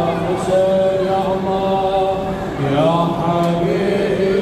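A man's voice chanting a Muharram mourning lament in long held notes that bend slowly in pitch, with a falling glide near the end.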